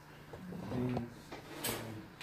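A man's voice, short and quiet bits of speech through a handheld microphone, broken by a few sharp clicks.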